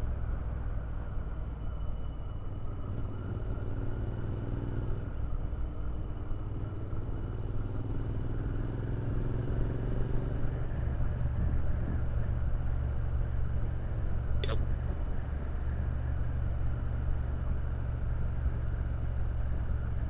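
Royal Enfield Interceptor 650 parallel-twin cruising at steady speed, heard from the rider's seat as a continuous low rumble mixed with wind noise. The engine note rises slightly a few seconds in, and there is a single short click about fourteen seconds in.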